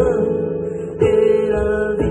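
A man singing a slow worship song, accompanied by an acoustic guitar strumming chords about once a second.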